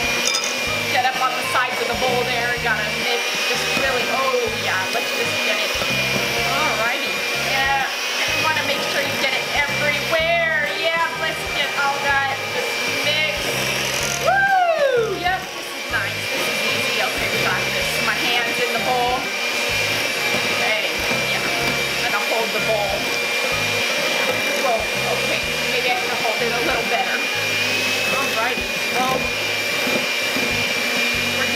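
Electric hand mixer running with its beaters in a bowl of cake batter: a steady motor whine with a high tone. The whine drops out briefly about halfway through, then resumes.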